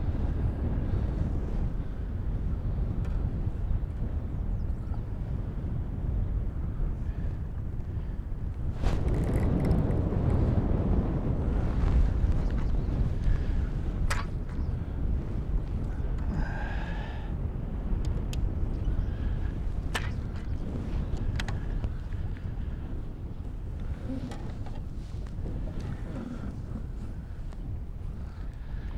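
Wind rumbling on the microphone on an open boat, a steady low buffeting that swells for a few seconds partway through. A few faint clicks come through it.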